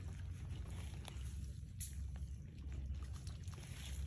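Steady low rumble of wind on the microphone, with a few faint ticks.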